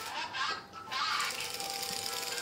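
Small electric motor of a remote-controlled robot beetle toy whirring steadily as it walks on a tiled floor.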